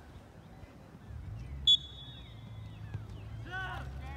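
A single short, sharp blast of a referee's whistle about halfway through, followed near the end by people shouting on the field.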